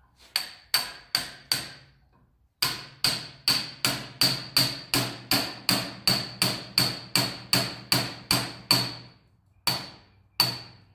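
Hammer tapping a brass punch against the piston of a brake wheel cylinder clamped in a steel vise, driving the stuck pistons out of the bore. Four taps, a short pause, then a steady run of about four taps a second, each with a short metallic ring, which stops briefly near the end and starts again.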